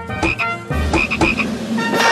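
Cartoon sound effect: a run of low throbbing, croak-like pulses with short high blips, over steady held musical tones.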